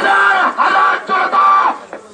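Crowd of men shouting protest slogans: three loud, held shouts in a row.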